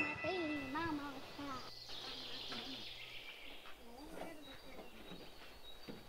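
The last ring of a struck iron triangle bell fades out in the first half-second, then quiet outdoor forest sound with birds chirping and a child's voice speaking softly.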